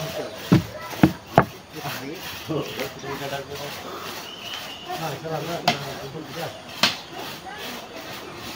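Wood being cut and handled by hand: a rasping rub of wood with about five sharp wooden knocks, most of them in the first second and a half and a couple near the end, while people talk.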